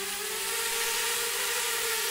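Extreme Flyers Micro Drone quadcopter hovering, its four small motors and propellers giving a steady high whine over a rush of air.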